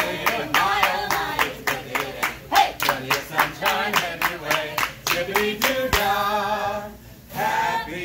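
A group of people clapping in quick, steady time while singing a chant together. A little before six seconds in the clapping stops and the singing goes over into long held notes.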